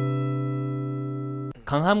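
An acoustic guitar chord left ringing and slowly fading, cut off suddenly about one and a half seconds in.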